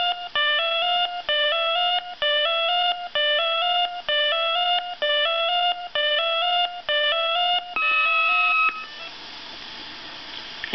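Electronic beeping tune recorded on a 1978 Mego 2XL Sports II 8-track tape, played through an 8-track player's speaker: a short phrase of stepped beeps repeats about nine times, then one longer tone, then tape hiss. It is the waiting music that fills the pause while the listener is to push the Q or C button.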